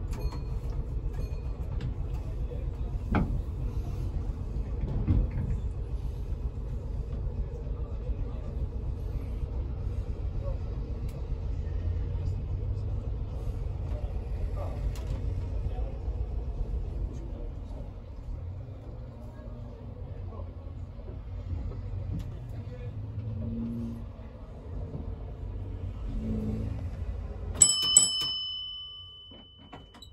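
A W-class tram running along the track with a steady low rumble and rattle. Near the end its gong is struck twice and rings out with a bright metallic tone as the running noise drops away.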